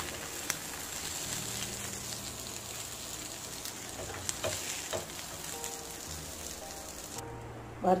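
Fish pieces sizzling in oil on a flat tawa, with a few sharp clicks of a spatula as the fried fish is lifted onto a steel plate. The sizzle cuts off suddenly near the end.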